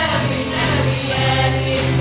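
Live performance by a small group of singers with acoustic guitar, the voices carrying a melody over the strummed chords. A bright percussion stroke lands about once a second.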